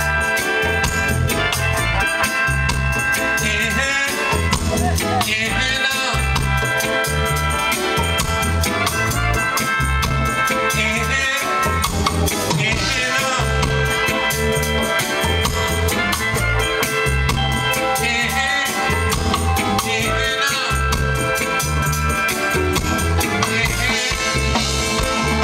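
Reggae band playing live without vocals: a repeating bass line under a drum kit with steady hi-hat ticks, electric guitar and keyboard.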